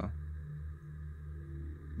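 Dark ambient background music: a low, steady droning tone with a faint higher tone above it.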